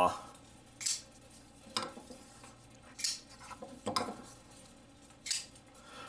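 Kubey KU203 flipper knives' D2 blades being flicked open on their bearing pivots, giving five sharp metallic snaps about a second apart as each blade locks.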